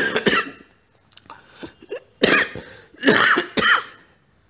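A man coughing and clearing his throat in three loud, rough bouts: one at the start, one about two seconds in, and a longer double one near the end.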